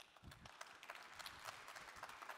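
Faint audience applause, a thin scatter of claps that sets in just after the start and keeps on.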